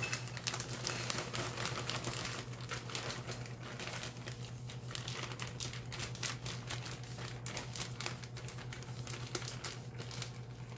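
Plastic bag of thawed shredded hash browns crinkling and rustling as it is shaken and emptied into a ceramic bowl: a dense, irregular run of crackles, over a steady low hum.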